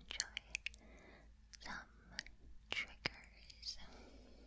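Soft whispering broken by several sharp clicks.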